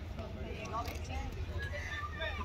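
Distant voices of players and people at the field calling out, faint and scattered, over a low steady rumble.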